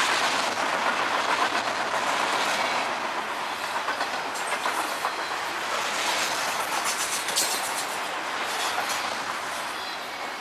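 A CSX freight train of high-sided open-top cars rolling past with a steady rush of wheels on rail. Clickety-clack of wheels over rail joints comes in clusters about four seconds in and again around seven seconds.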